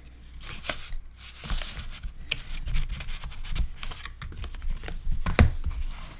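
Cardstock pages and flaps of a handmade paper mini album being handled and turned: scattered light rustles and soft taps, with one louder knock near the end.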